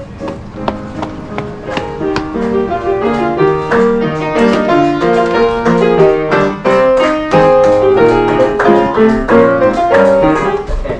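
Piano playing a lively passage of quick notes over chords, growing louder over the first couple of seconds.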